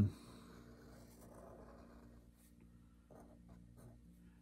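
Pen drawing on paper: faint scratching strokes as a curved pumpkin outline is sketched.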